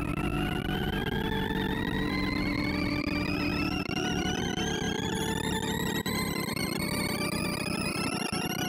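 Sorting-algorithm sonification from ArrayVisualizer: a dense, continuous stream of rapid synthesized beeps whose pitch follows the array values being accessed. An in-place merge sort of 2,048 numbers is running, and the tone glides steadily upward as it works through the values.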